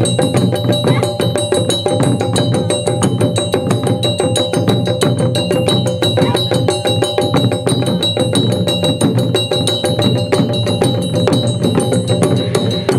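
Taiko ensemble playing barrel drums on stands, struck with wooden sticks in a fast, dense, driving rhythm, with a steady ringing tone held over the beats.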